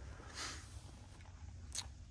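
Quiet room tone with a low steady hum, a soft hiss about half a second in and a faint click near the end.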